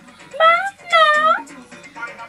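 Two short, high-pitched voice-like calls over background music. The first rises slightly; the second dips and then rises in pitch.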